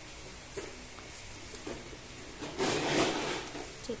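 Hands handling a random orbital sander and the paper hook-and-loop sanding disc fitted to its pad: faint knocks and rubbing, with a louder scraping rustle lasting under a second about two and a half seconds in.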